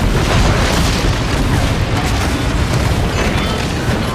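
Film sound effect of a wooden railway trestle blowing up: a sudden huge blast out of silence, followed by a loud continuous rumble full of crackling debris.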